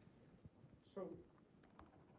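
Near silence in a seminar room, broken about a second in by a short vocal sound from a voice, followed by a few faint, sharp clicks.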